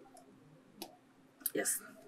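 A single sharp click of a stylus tapping a tablet screen a little under a second in, in a mostly quiet pause. A man's voice starts near the end.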